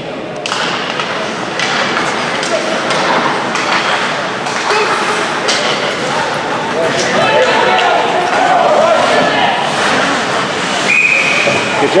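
Ice hockey play in an echoing indoor rink: skates on the ice, sticks and puck knocking against each other and the boards, and players and spectators calling out. Near the end a referee's whistle blows with a steady high tone for about a second, stopping play as the goalie covers the puck.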